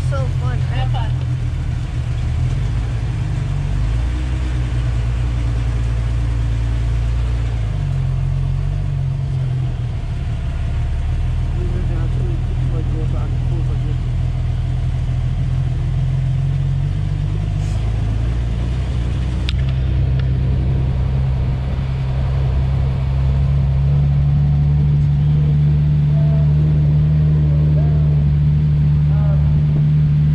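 Multi-seat dune buggy's engine running under way, a steady low drone whose pitch shifts a few times as it speeds up and slows down, growing louder about three-quarters of the way through.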